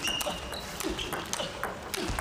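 Table tennis rally: the celluloid ball clicking off the rackets and bouncing on the table in a quick series of sharp ticks, with short high squeaks from the players' shoes on the court floor.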